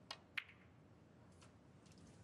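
Snooker cue tip striking the cue ball, then the cue ball clicking sharply against a red about a third of a second later, the second click the louder. A faint tick follows about a second after.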